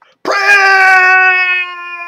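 A man's voice holding one long sung note, steady in pitch, loud at first and dropping in level about one and a half seconds in.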